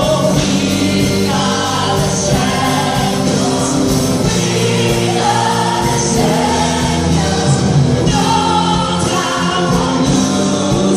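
A live rock band playing with a large choir singing along, heard from the audience in a concert hall.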